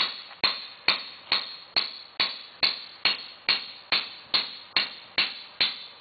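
Caulking mallet striking a caulking iron in a steady rhythm of about two blows a second, some fourteen sharp knocks, driving caulking cotton into a seam of a wooden boat's planking.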